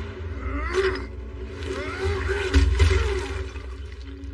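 Film soundtrack: animal roars and growls over sustained dramatic score, with a heavy low rumble that swells about two and a half seconds in.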